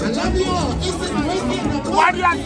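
Several voices talking, one a man's voice through a microphone, over background music.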